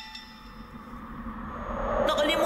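Cartoon music sting: a bell-like chord rings out and fades away, while a low swelling sound builds up toward the end.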